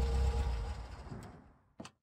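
Background sound effect of an idling car engine, a low steady rumble with a faint hum, fading out over about a second and a half. Then the audio drops to silence, broken by a few short clicks near the end.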